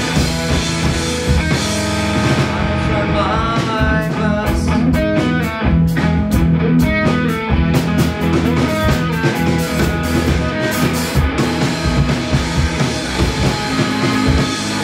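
Live rock trio playing an instrumental passage: electric guitar, electric bass and a Ludwig drum kit. The cymbal wash thins out partway through, leaving separate drum hits under the guitar and bass.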